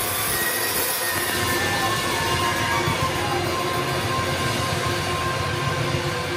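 Loud, steady wall of electric guitar feedback and amplifier noise from a live rock band, with faint feedback tones wavering in pitch and no clear drum hits.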